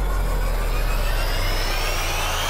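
Synthetic riser sound effect of a logo intro: several tones climbing steadily in pitch over a deep, steady rumble.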